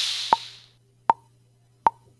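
Drum-machine loop at 78 bpm: a sampled open hi-hat rings out and fades away over the first second or so. A short bongo tick falls on each beat, three times, about three-quarters of a second apart.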